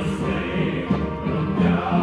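Live musical-theatre number: a chorus singing over a keyboard playing orchestral string and brass patches, with sustained chords.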